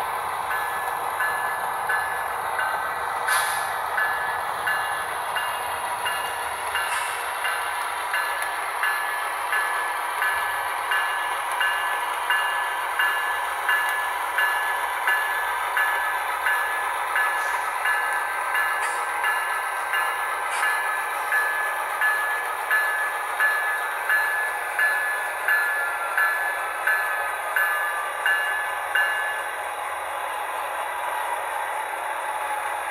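Model diesel locomotives running on a layout: steady rolling and motor noise, with a sound-system locomotive bell ringing about one and a half times a second and a few sharp clicks from the track.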